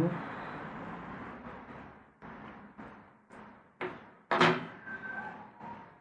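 Scissors cutting a tuft of hare fur from a hare's mask: a soft rustle of the fur being handled, then several short, crisp snips, the loudest about four and a half seconds in.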